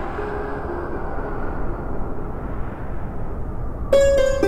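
A steady rushing, rumbling noise effect, like wind or a distant jet, that slowly grows duller. The notes of the previous music fade out in the first second, and plucked-string music comes in sharply at the very end.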